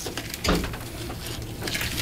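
Brown sugar being spread by hand onto a metal sheet pan: faint handling noise, with a soft thump about half a second in.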